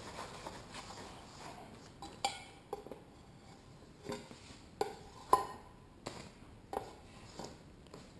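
Scattered light clinks and taps, about eight over several seconds, irregularly spaced, as tinting tools and a pane of glass are handled and set down during clean-up.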